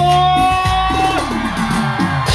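Live cumbia band playing: one long held note that edges slightly upward for about a second, then a falling run of notes over a steady bass line.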